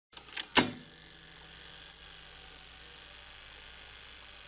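Three quick mechanical clicks, the last and loudest about half a second in, then a faint steady hiss with a low hum.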